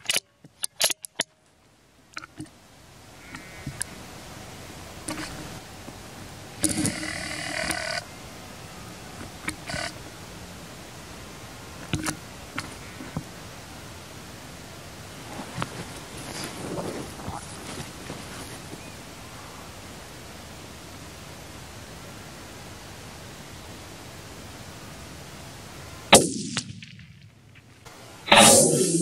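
Quiet outdoor field ambience with a few sharp clicks in the first second and scattered faint rustles, then one sharp .223 rifle shot about two seconds before the end.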